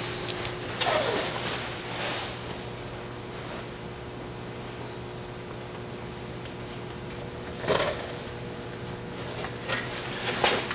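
Quiet hand work of threading a fan thermostat temperature switch into an LS engine: a few faint clicks and rustles early, then a short scrape about three-quarters of the way through. A steady electrical hum runs underneath.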